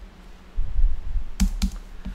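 Computer keyboard keys pressed: two sharp key clicks about a quarter second apart, as line breaks are typed into a document, preceded by a low dull rumble.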